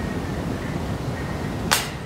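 A seasoning jar tossed into a wire shopping cart, landing with one sharp clack near the end, over steady low store background noise.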